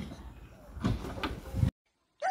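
Metal bolt latch on an old wooden door rattled and clicked by a child's hands, with a few sharp clicks about a second in; the sound cuts off abruptly near the end.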